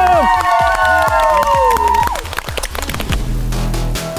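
A long, drawn-out shouted cheer of the team name, falling slowly in pitch and breaking off about two seconds in. It sits over electronic dance music with a steady beat, and a deep bass comes in about three seconds in.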